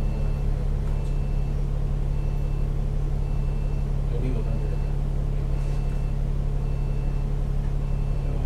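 Double-decker bus's diesel engine idling while the bus stands still, a steady low hum heard from the upper deck. A faint short high beep repeats about once a second, and faint voices come and go.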